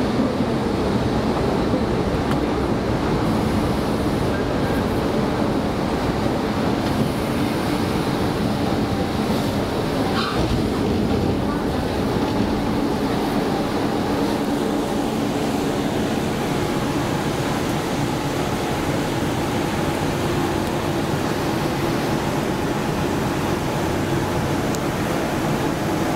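Inside a former Tokyo Marunouchi Line subway car under way: a steady rumble of wheels on rail with a low hum from the running gear, heard from within the carriage. A brief higher-pitched squeal or clatter rises out of it about ten seconds in.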